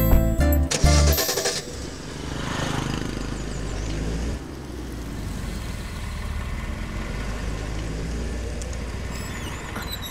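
Background music with deep bass notes for the first second and a half, then a Toyota Innova MPV's engine and tyres as it drives off, a steady low rumble that fades near the end.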